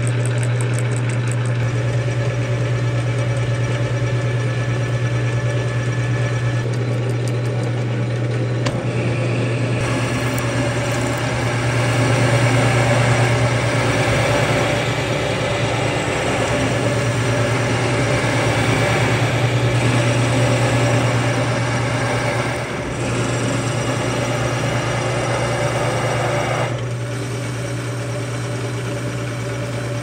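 Metal lathe running with a steady low hum while an acme thread is single-point cut on the spindle, the tone shifting slightly a few times as passes change.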